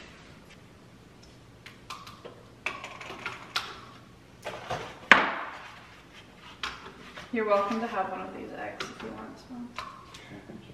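Kitchen handling sounds as eggs are taken from a carton and set into a plastic electric egg cooker: scattered light clicks and knocks, the loudest about five seconds in. A person's voice is heard briefly from about seven to nine seconds.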